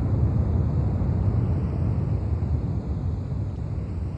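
A low, steady rumbling noise that starts to fade near the end.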